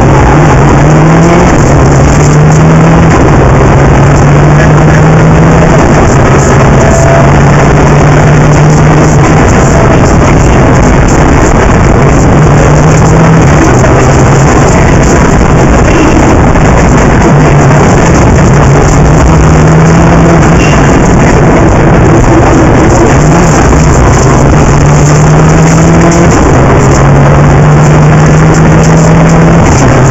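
Rally car engine driven hard, the revs climbing and dropping back again and again with the gear changes, very loud over a steady rush of wind and road noise.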